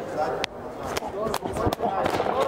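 About four sharp smacks and knocks as one MMA fighter rushes forward and drives the other into the cage fence, with voices in the background.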